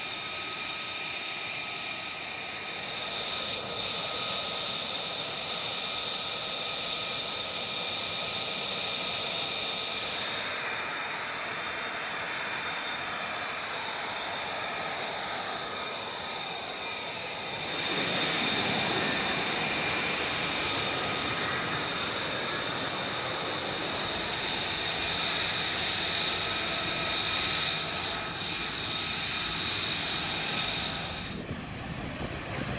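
F-35B Lightning II jet engines running on the ground: a steady high-pitched whine with several fixed tones over a rushing noise. From about ten seconds in, sweeps in pitch come through, and from about eighteen seconds a louder, deeper rush joins as a second F-35B flies low nearby.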